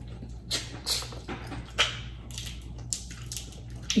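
A dog giving several short, separate barks, about four over a few seconds.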